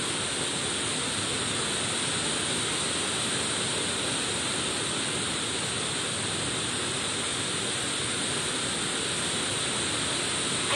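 Heavy rain falling on the metal roof of a steel-frame building: a steady, even rush of noise that does not let up.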